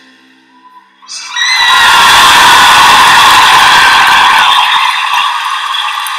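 A loud, high-pitched vocal shriek held for about four seconds, starting about a second in, so close to the microphone that it overloads into a harsh, distorted wash.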